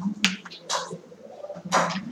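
Backgammon play: short, sharp clacks of pieces on the board, three of them within about a second and a half, over a low steady hum.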